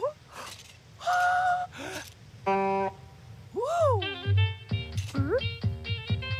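Cartoon soundtrack: a cartoon bird's short vocal sounds gliding up and down in pitch, mixed with a few held notes, then music with a regular beat starting about four seconds in.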